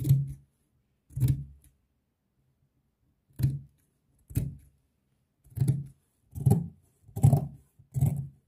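Scissors cutting through two layers of sequined fabric: about seven separate snips, irregularly spaced about a second apart.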